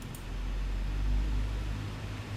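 A low steady hum that swells slightly through the middle, with a faint mouse click near the start.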